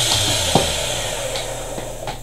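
Running homemade motor-generator rig giving a steady electrical hum under a hiss that gradually dies down, with a single sharp click about half a second in.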